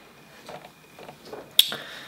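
A pause with a few faint soft sounds and one sharp, short click about one and a half seconds in.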